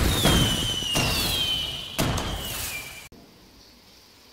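Logo intro sound effect: loud bangs about a second apart, with a high whistle falling slowly in pitch over them. It all cuts off abruptly about three seconds in.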